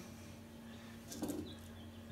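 Quiet shop with a steady low hum, as pinion shims and parts are handled at a Dana 60 differential housing, giving one brief soft sound a little past a second in.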